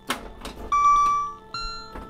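Custom sound board of a Bally Star Trek pinball machine playing a background sound loop: a sharp click just after the start and another about half a second in, then a series of steady electronic beeps at a few different pitches, one held about a second before a higher one takes over.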